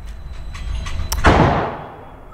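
A single gunshot from another lane on an indoor range: a sharp report a little over a second in that dies away in a reverberant tail, with a few faint clicks before it.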